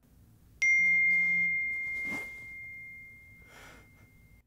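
A single high, bell-like ding struck about half a second in, ringing on as one clear tone and slowly fading. Two soft whooshes of noise come later, near the middle and near the end.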